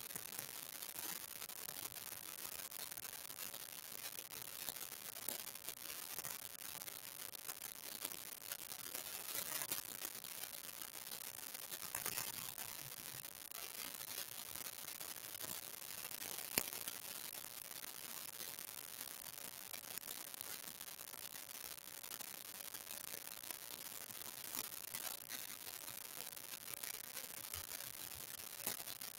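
Faint steady hiss with scattered small clicks, and one sharper click a little past the middle.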